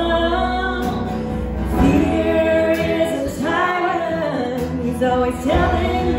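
A live band playing a song with singing: a woman's voice leads, holding and sliding between notes, over acoustic guitar and piano.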